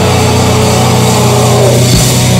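Metalcore band playing live at high volume, with a low, distorted guitar and bass chord held and droning and no drum beat under it. A drum hit comes in right at the end.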